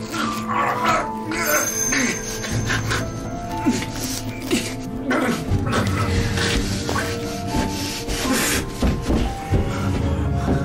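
A horror film's music score of held, sustained tones, with a man's strained, snarling vocal noises over it.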